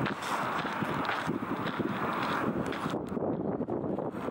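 Footsteps crunching on a gravel and dirt surface, a steady run of short irregular steps, with wind buffeting the camera microphone.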